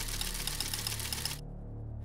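Typewriter sound effect: rapid, even key clicks that stop suddenly a little past halfway, over a low, steady music drone.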